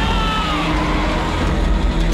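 A man's drawn-out yell, slowly falling in pitch, over a steady low rumble of car engines.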